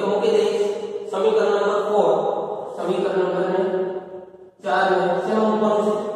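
A man's voice speaking in long, level-pitched stretches, with a short break about four and a half seconds in.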